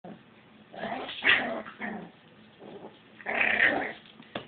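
Puppy growling in two rough spells, the second near the end, in annoyance at being spun and teased.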